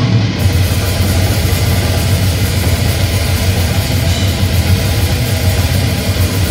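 Brutal death metal band playing live: heavily distorted electric guitar and bass with drums in a loud, dense, unbroken wall of sound, its weight in the low end.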